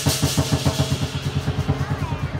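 Lion dance drum beating fast and evenly, about seven beats a second, with cymbal crashes dying away in the first second.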